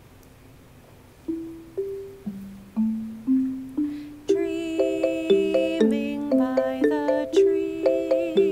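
Wooden-bar xylophones played with mallets in two parts. One part enters alone about a second in, with single notes climbing step by step. A second part joins about four seconds in, and the two play a gentle song introduction together.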